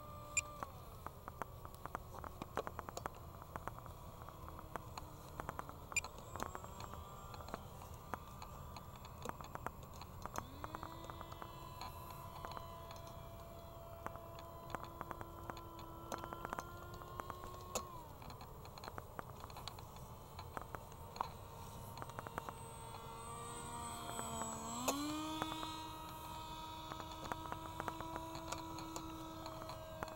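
Electric motor and propeller of an RC Icon A5 model seaplane in flight, a faint whine whose pitch sinks slowly, rises sharply about ten seconds in as the throttle comes up, drops again near eighteen seconds and climbs once more about twenty-five seconds in. Scattered small clicks run over it.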